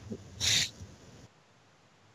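A short breathy laugh, a quick puff of air through the nose and mouth, loudest about half a second in, then quiet.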